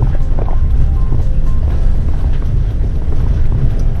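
Ford Transit cargo van driving slowly on a gravel road, heard from inside the cab: a loud, steady low rumble of engine and tyres.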